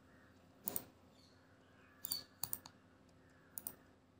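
A few sharp computer mouse clicks, scattered and some in quick pairs.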